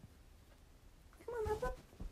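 A small dog giving one short, high whine, lasting about half a second, a little past the middle.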